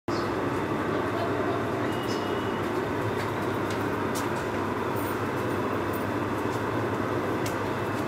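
Steady background rumble of a crowded prayer hall, an even noise with a few faint clicks and no voices standing out.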